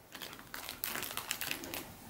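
Soft, irregular crinkling and rustling of a plush seagull dog toy being pressed and handled by hand, starting about a second in.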